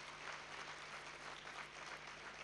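Audience applauding, faint and steady, over a low steady hum.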